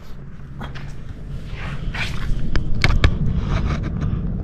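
Footsteps and handling noise on a concrete floor over a steady low rumble, with a few sharp clicks or knocks about three seconds in.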